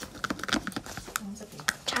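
Light, irregular clicks and taps as plastic slime-kit containers and a spoon are handled, about seven clicks over two seconds.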